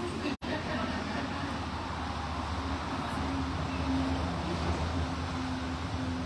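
Low murmur of an audience in a hall, over steady room noise with a faint low hum; the sound drops out for an instant about half a second in.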